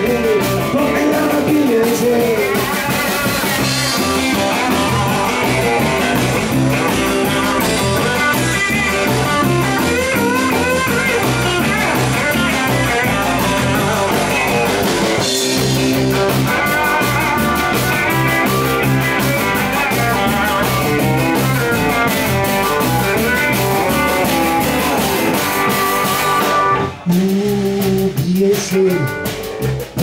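Live blues-rock band playing an instrumental break: an electric guitar solo with bent notes over bass guitar and drum kit. About three seconds before the end the band drops out suddenly, leaving a few sharp hits.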